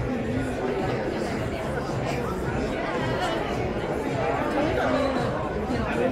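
People talking over crowd chatter in a large exhibition hall, with music playing in the background.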